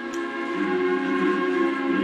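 An anthem played on instruments, with several notes held together in long sustained chords, fading in over the first half second and then steady.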